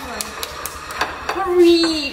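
A few sharp clicks and taps from people eating by hand off ceramic plates. A short held vocal sound comes in the second half.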